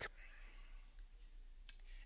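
Near silence: faint room tone with a low hum, and one small click shortly before the end.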